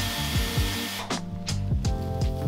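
A Dyson Airwrap hot-air styling wand blowing, cutting off suddenly about halfway through. Background music with a steady drum beat plays throughout.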